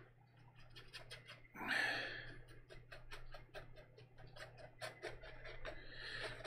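Faint scratchy ticks of a bristle brush dabbing and dragging oil paint on canvas, many small strokes in quick succession, with one longer soft swish about a second and a half in.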